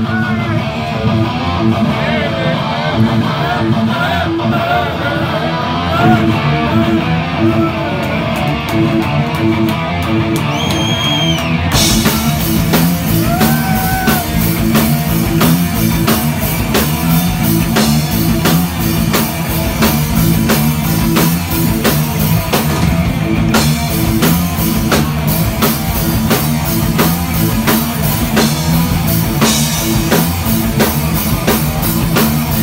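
A thrash metal band playing live: a guitar intro, then the full band with drum kit and bass guitar coming in heavily about twelve seconds in, with a steady pounding beat.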